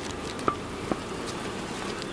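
Steady outdoor background noise, with two faint short ticks, one about half a second in and one just before the one-second mark.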